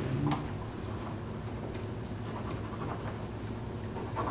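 Quiet meeting-room tone with a steady low hum, broken by a few faint clicks and rustles.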